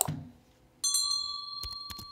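A soft knock, then about a second in a single bright bell-like ding that rings on and fades slowly, with a few light clicks under it.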